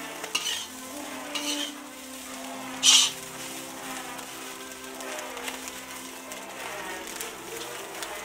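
A metal spatula stirring and scraping shredded food in a large metal wok, with steady frying sizzle; the sharpest, loudest scrape comes about three seconds in.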